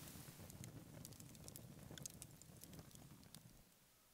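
Near silence, with faint scattered crackles from a small campfire that die away near the end.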